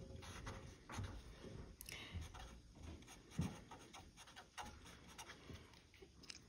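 Pen drawing curved lines on paper: faint scratching strokes with a few light ticks.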